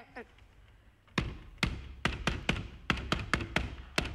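A fist knocking on a wooden door, about ten sharp raps in an uneven rhythm starting about a second in. It is the mother's agreed signal knock, the one the children may open the door to.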